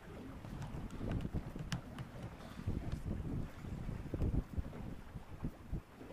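Wind buffeting the microphone on an open boat, an irregular low rumble with no clear pitch, with choppy water slapping against a small aluminium hull.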